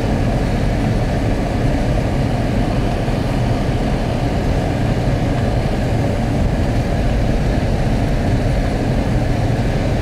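A car driving slowly along a dirt road, heard from inside the cabin: a steady low rumble of engine and tyres.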